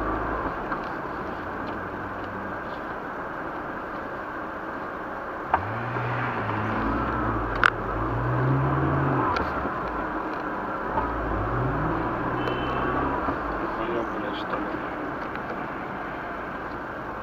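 Steady road and cabin noise heard from inside a car, with a car engine revving up twice in the middle and two sharp clicks, the second the loudest sound.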